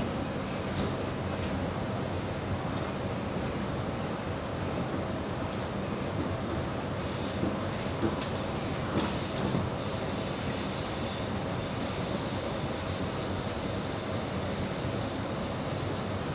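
Interior running noise of a Sydney Trains H set (OSCAR) double-deck electric train: steady rumble and rattle of the carriage on the rails. About halfway through, a continuous high squeal joins in and holds on.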